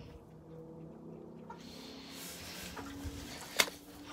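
Quiet pen with a faint steady low hum, then one sudden thump about three and a half seconds in as a boot slips in the mud.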